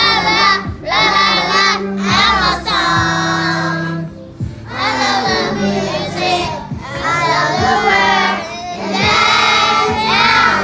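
A group of young children singing a song together in phrases, their voices rising and falling in pitch, over instrumental backing music with steady low notes.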